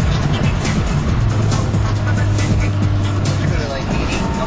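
Inside the cabin of a turbocharged Honda Civic with a B18C1 1.8-litre four-cylinder engine, driving at speed: a steady engine drone and road noise under music with a beat.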